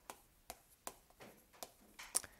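Chalk on a blackboard while writing: a few faint, short taps and scrapes spread through the quiet.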